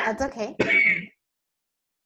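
A woman with a cough clearing her throat and speaking a few words over a video call. The sound cuts off abruptly to silence about a second in.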